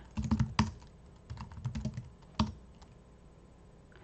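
Typing on a computer keyboard: a quick run of keystrokes in the first second, then scattered single key clicks, dying away to near quiet for the last second.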